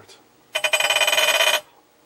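Electric vibrator massager with a hard plastic attachment pressed against the glass of a CRT, giving a loud, rattling buzz that starts about half a second in and cuts off after about a second.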